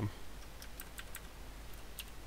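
Typing on a computer keyboard: a handful of light, irregularly spaced keystrokes.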